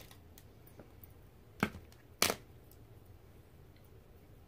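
Two short sharp clicks, about half a second apart, from the plastic case of a Sakura Koi CAC watercolour palette being handled and set down on the table.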